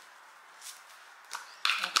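A few faint, brief rattles of a seasoning shaker jar being shaken over a bowl in a quiet room. A woman starts speaking near the end.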